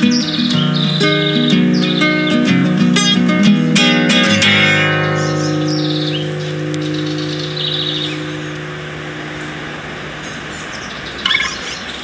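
Acoustic guitar playing the last phrase of a song, ending on a strummed chord that rings and slowly fades out. Birds chirp over it and on into the quiet after it.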